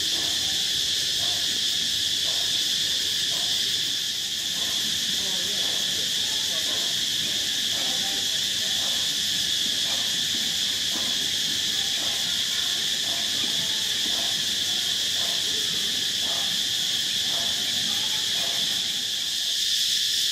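Loud, steady, high-pitched chorus of tropical jungle insects at dusk, a continuous drone with no letup. A stereo plays faintly underneath for most of it.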